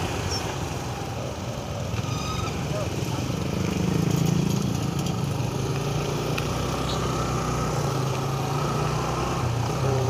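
Motorcycle engine running steadily while riding slowly in traffic, with road and wind noise; the engine note grows louder around four seconds in and then settles.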